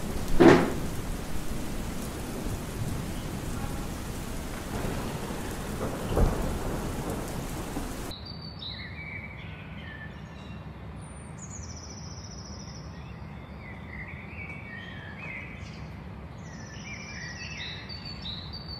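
Steady rain with a short loud burst about half a second in and a rumble of thunder about six seconds in. About eight seconds in the rain cuts off suddenly and gives way to birds chirping and whistling, many short calls that glide in pitch.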